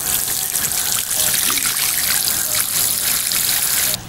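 Water sprinkling from a watering can's rose onto loose garden soil: a steady hiss of many fine streams that cuts off suddenly just before the end.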